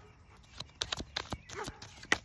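A deck of cards being shuffled by hand: a quick, irregular run of sharp card snaps and clicks, starting about half a second in.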